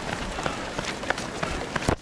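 Footsteps of runners on asphalt, shoes striking at a running pace, over a steady rush of outdoor noise on the handheld action camera's microphone.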